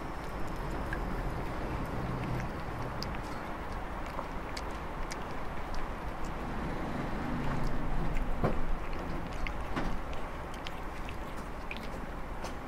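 Domestic cat chewing cat food, with scattered small wet clicks of eating, over a steady background rumble that swells for a couple of seconds about two-thirds of the way through.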